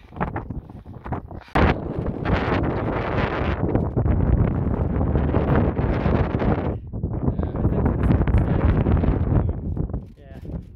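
Gusty wind buffeting the microphone, starting suddenly about a second and a half in, with a short lull about seven seconds in.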